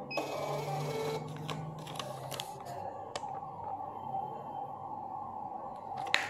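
Balaji BBP billing machine's built-in thermal receipt printer printing out the saved header and footer. Its feed motor whirs steadily for about the first three seconds, with a few light clicks.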